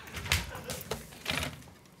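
A few short knocks and rustling movement sounds, the sharpest about a third of a second in, with no speech.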